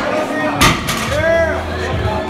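A loaded barbell is set down from a deadlift lockout, with the weight plates hitting the floor in one loud bang about half a second in. Just after, a voice gives a short shout that rises and falls in pitch, over the crowd's talk.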